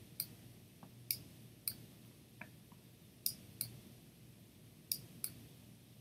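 Faint, sharp clicks of a computer mouse button, about seven in all, some coming in quick pairs.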